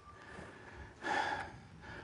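A man's short breathy exhale about a second in, over faint low background noise.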